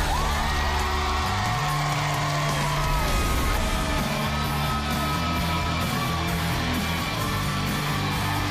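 Talk-show opening theme music with a steady bass line and guitar, with a studio audience cheering and whooping over it.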